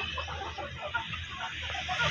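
A flock of young desi chickens clucking in many short, overlapping calls as they feed together.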